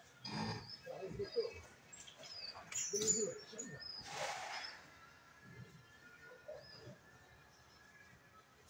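Small birds chirping in short high notes, with people talking in the background; a short breathy rush of noise comes about four seconds in.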